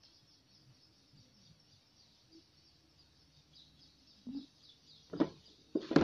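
Small birds chirping steadily in the background, with a few short sharp knocks near the end from banana peels and a knife being handled on the table.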